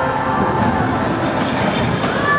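Stunt scooter wheels rolling over a rough concrete skatepark floor: a steady rolling rumble.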